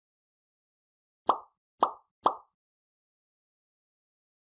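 Three short pop sound effects about half a second apart, each starting sharply and fading quickly, the kind that accompany animated like, comment and share buttons popping onto a screen.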